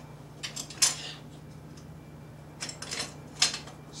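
A lamp reflector is slid onto a Joker-Bug light head and locked into place. It gives a few light clicks and knocks about half a second to a second in, and another cluster near the three-second mark.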